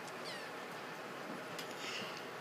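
Steady room noise with a brief, faint high-pitched squeak falling in pitch about a quarter of a second in.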